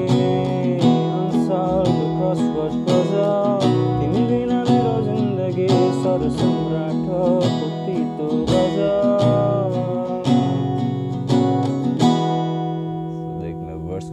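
Capoed acoustic guitar strummed in a down-up-up, down-up-up, down-down-up pattern, moving through a G, F♯, Cadd9 chord progression. It eases off a little near the end.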